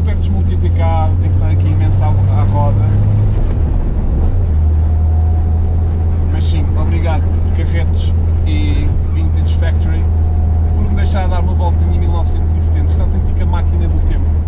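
Air-cooled flat-six engine of a 1970 Porsche 911T running under way, a loud, steady low drone that dips briefly about three and a half seconds in.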